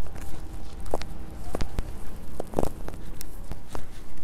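Footsteps of a person walking while filming, with irregular clicks and knocks from handling the phone, over a steady low rumble on the microphone.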